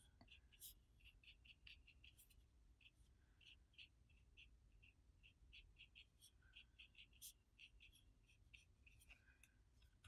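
Near silence, with faint soft ticks, a few a second and irregular, from a small paintbrush stroking damp watercolour paper while blending water-based marker ink.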